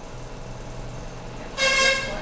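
A vehicle horn honks once, short and loud, about one and a half seconds in, over a steady low background hum.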